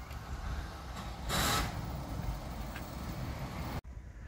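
Outdoor background noise: a steady low rumble with one brief, louder rushing sound about a second and a half in. It cuts off abruptly just before the end.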